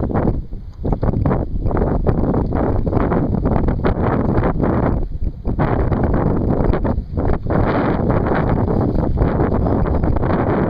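Wind buffeting the microphone: a loud, gusty rumble that surges and drops in short dips.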